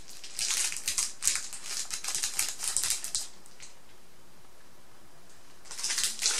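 Makeup brushes with clear plastic handles clicking and rattling against one another as the bundle is handled, a quick run of light clicks that stops about halfway through.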